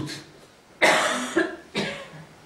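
A cough: one harsh cough a bit under a second in, fading over about half a second, then a shorter second cough near the end.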